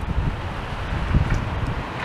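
Wind buffeting the camera's microphone: a steady rushing noise with low rumbles, swelling once a little past the middle.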